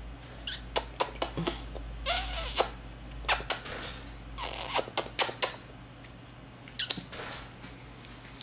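A Spanish water dog puppy playing at a person's hand: a scattered series of sharp clicks and short scuffling noises, with a brief squeaky sound about two seconds in.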